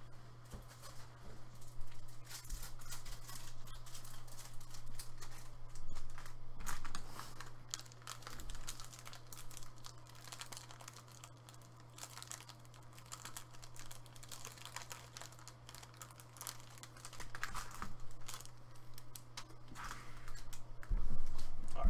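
Off-camera handling noises: irregular crinkling and rustling with quick clicks, like plastic being handled or keys being tapped, over a steady low hum.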